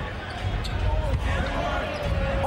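A basketball being dribbled on a hardwood court under the steady noise of an arena crowd, with one long held shout rising out of the crowd in the second half.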